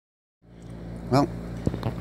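A steady low hum fades in after a brief silence, with one short click about three-quarters of the way through, under a man's single spoken word.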